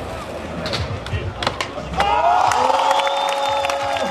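Skateboard rolling on concrete with a couple of sharp clicks under crowd noise. About halfway in, a long held pitched note starts and runs on.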